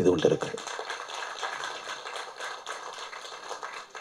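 Audience applauding: a dense patter of many light claps after a man's voice through a microphone stops about half a second in.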